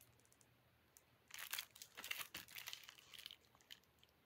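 Faint crinkling of the plastic shrink-wrap on a factory-sealed Blu-ray case as it is handled and turned over, coming in irregular bursts from about a second in.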